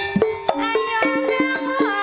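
Banyumasan gending music for an ebeg dance: struck keyed instruments play quick, interlocking pitched notes over sharp drum strokes. Near the end a sliding melody line bends in pitch.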